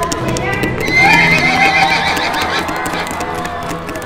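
A horse whinnying, a shaky, wavering call starting about a second in and lasting about a second, over background music.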